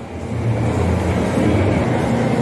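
Steady, even rumbling background noise of a large indoor shopping-mall hall, with no distinct events.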